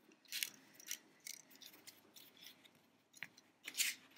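Soft craft wire being handled and bent by hand: a few short, faint scrapes and rustles, with the loudest just before the end.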